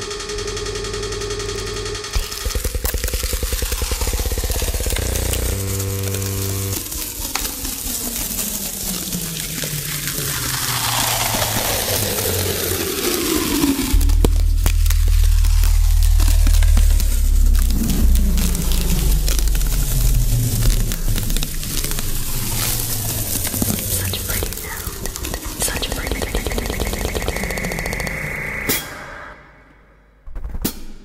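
Dense electronic music from a live new-music piece: layered synthetic sounds and steady tones, a long falling glide about ten seconds in, then heavy bass from about halfway. It cuts off suddenly just before the end.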